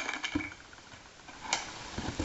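A plastic buttermilk bottle and its screw cap being handled on a kitchen counter: a few faint clicks, with a small knock about a third of a second in and a clearer one about a second and a half in.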